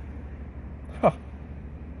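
A man's short falling exclamation "huh" about a second in, over a steady low background hum.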